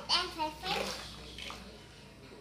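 A young child's voice: a short, unclear utterance in the first second, then quiet with a single faint tick of plastic toys about one and a half seconds in.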